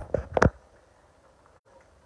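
A few short, sharp knocks in the first half second, then faint background.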